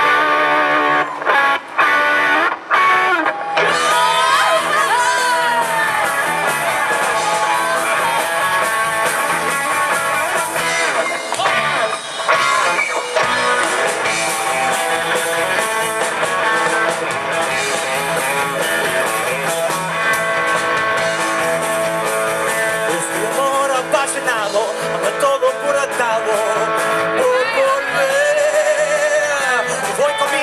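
Live rock band of electric guitars, bass and drums playing a traditional Mexican ranchera-style tune in a punk-rock style. It opens with a few short stop-start stabs, and the full band comes in about four seconds in and plays on steadily.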